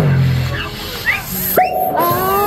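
Pop dance track played through a small street amplifier, in a break: the bass drops out about half a second in, leaving short rising vocal sounds, and a held note comes in near the end.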